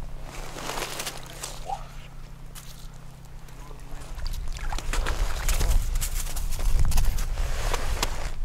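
Rustling and handling noises as an ice angler fights a fish and draws the line up by hand through the ice hole, with a low rumble building in the second half.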